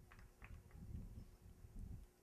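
Near silence: a faint, uneven low rumble of wind buffeting the microphone, with a few faint ticks.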